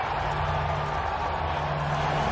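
Low bass music notes that change in steps, starting suddenly, over a steady wash of arena crowd noise.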